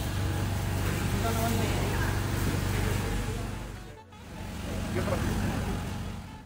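Market background: a steady low hum, like a running engine or machine, under faint distant voices. The sound drops out briefly about four seconds in.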